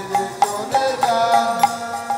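Kirtan music without voices: a harmonium plays a melody in held notes, over small hand cymbals (kartal) struck in a steady beat, about two strikes a second.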